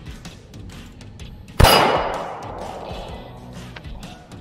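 A single 9mm pistol shot from a P80 Glock 17 with a ported slide: one sharp report about a second and a half in, with an echo that fades over about a second and a half.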